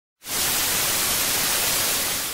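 Television static hiss, a steady even noise that starts a moment in.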